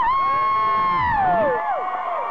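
Concert audience screaming and cheering: one high-pitched scream close by, held steady for about a second and then falling in pitch, with other fans' screams overlapping it.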